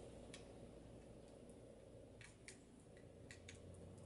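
Near silence with a few faint small clicks as the plug of a USB charging cable is handled and fitted into the port of camera sunglasses.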